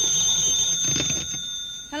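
Telephone bell ringing, a steady high ring that stops just before the call is answered.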